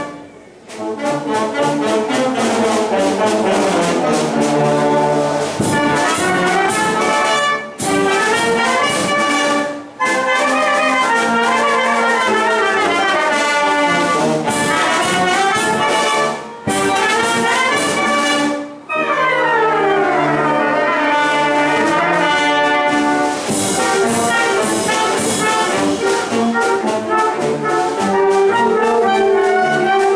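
Village wind band of clarinets and brass playing together under a conductor. The music stops briefly for a short break several times, and the parts play fast scale runs that climb and fall.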